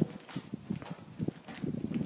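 Footsteps on a dirt and gravel tunnel floor: a run of short, uneven steps.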